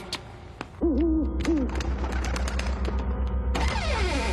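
Cartoon soundtrack effects: short hooting tones that bend in pitch start about a second in, over a rapid, pulsing deep rumble and scattered sharp clicks.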